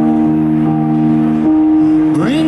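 Yamaha MOXF6 electric keyboard playing held chords, the chord changing about a second and a half in.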